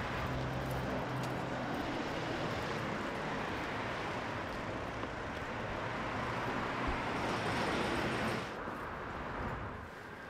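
Steady outdoor street ambience of traffic noise, with a low hum in the first few seconds that fades away.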